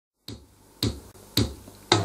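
Four evenly spaced percussion beats, about one every half second, each a sharp snap over a low thump, counting in the song's intro.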